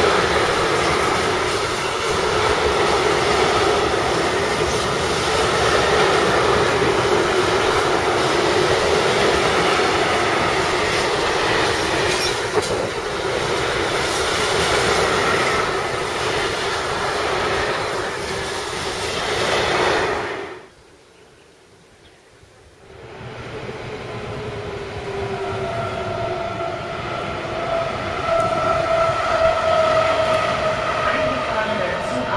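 Wagons of a long mixed freight train rolling past at speed on the rails, a steady loud rumble with a held tone. After an abrupt break about 20 seconds in, a MaK diesel shunting locomotive runs with a steady engine tone.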